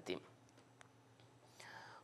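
Near silence between a man's sentences: his last word trails off at the start, a faint click comes about a second in, and a soft intake of breath is heard near the end, just before he speaks again.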